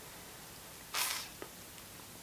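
Quiet room tone broken by one short, sharp hiss of breath about a second in, followed by a faint click.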